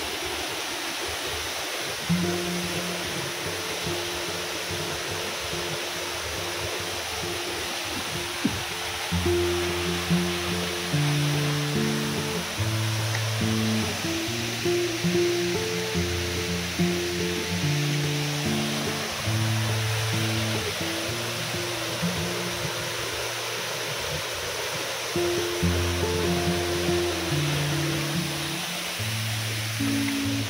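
Background music of slow sustained melodic notes, entering about two seconds in and joined by deeper bass notes from about nine seconds. Under it runs a steady rush of falling water.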